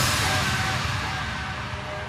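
Hands-up dance music in a breakdown: the kick drum has dropped out and held synth chords carry on alone, slowly growing quieter.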